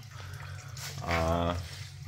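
Gearbox oil trickling from the open drain hole of a Land Rover Defender's automatic transmission into a drain pan, faint under a steady low hum.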